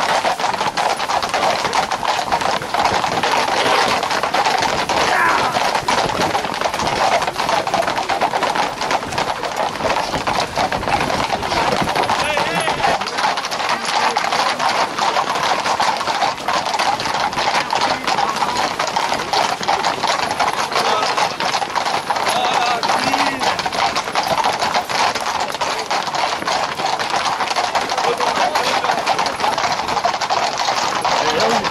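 Hooves of a tight pack of Camargue horses clattering on asphalt, many strikes overlapping without a break, under the voices of a crowd running alongside.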